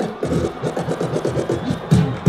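DJ scratching on Pioneer decks: a rapid run of short back-and-forth pitch sweeps over the music.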